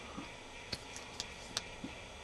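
Small flat-bladed screwdriver twisting in the crimped seam of an aluminum electrolytic capacitor can, prying the rim up off the steel ring beneath it: a few faint, irregular clicks of metal on metal.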